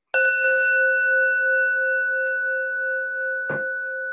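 A metal singing bowl struck once with a mallet, ringing on with a steady low tone and several higher overtones that fade slowly. A brief knock about three and a half seconds in.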